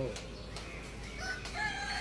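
A rooster crowing faintly, starting about a second in.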